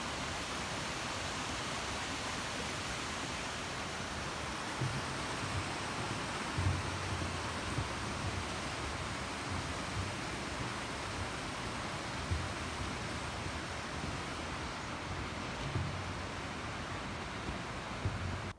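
Steady rushing of a mountain stream in the valley below, with a few soft low thumps of footsteps on a snow-covered suspension bridge.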